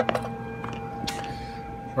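Steady audio test tone modulating the Ranger RCI-2970N4's AM carrier through the Asymod 6 modulator, a single high pitch with fainter overtones that stops near the end. A few light clicks and a brief rush of noise about a second in.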